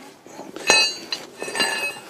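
Steel hand tools clinking against each other as a large spanner is picked up: one sharp, ringing clink about two thirds of a second in, then a few lighter ones.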